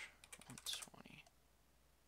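A quick run of computer keyboard keystrokes in the first second or so, faint and close.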